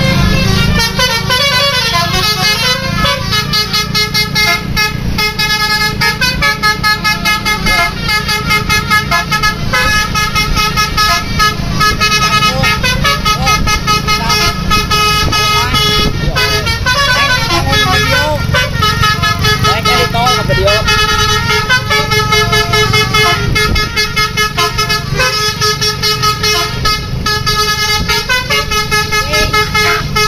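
Bus telolet horn on a Hino tour bus: a set of multi-tone air horns playing a melodic tune, the notes changing rapidly in repeating runs that go on with hardly a break.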